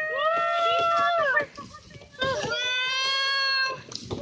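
A high-pitched human voice calling out in two long, drawn-out, sing-song calls, each held for over a second, with a short break between them about a second and a half in.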